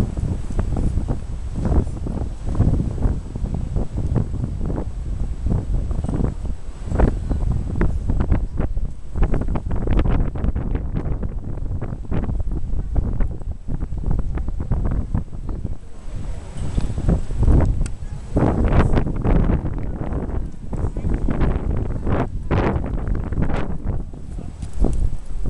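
Wind buffeting the camera microphone: a loud, uneven low rumble that surges and drops in gusts, thinner for a few seconds in the middle.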